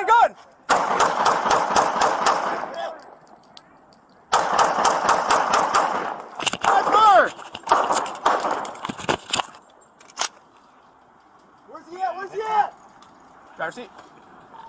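Gunfire in a police shootout, picked up by an officer's body-worn camera: a rapid volley of shots about a second in, lasting some two seconds, and a longer volley of rapid shots from about four seconds in, lasting some five seconds, with a shout in the middle of it. Voices follow near the end.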